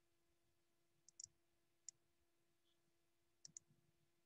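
Near silence broken by about five faint computer mouse clicks: a quick pair a little after one second in, a single click near two seconds, and another quick pair about three and a half seconds in.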